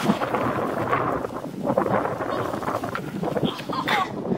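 A small wooden sled sliding fast down a steep slope of thin snow over dry grass, with a rider standing on it: a steady rough scraping and hissing of the board over snow and grass.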